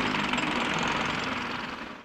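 Motor scooter being ridden: steady engine drone mixed with wind and road noise, fading out near the end.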